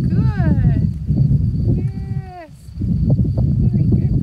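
A person's voice making wordless, drawn-out high tones: a sliding call in the first second, then a held note that drops away about halfway through. Under it runs a steady low rumble.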